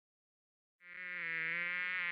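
Buzzing bee sound effect that starts a little under a second in, out of silence, and holds one steady pitch.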